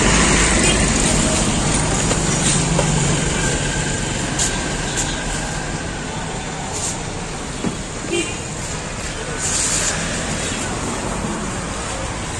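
Outdoor roadside ambience: steady road-traffic noise with a vehicle engine humming between about one and four seconds in, and background voices.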